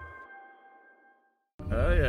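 Background music ending: its last held chord fades out over about a second into a short silence, then voices cut in abruptly near the end.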